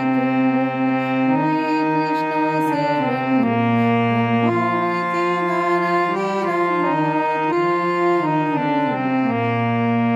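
Harmonium playing a slow bhajan melody alone, its reedy sustained tone moving smoothly from note to note. A low bass note sounds under the melody at the start, about halfway through and again near the end.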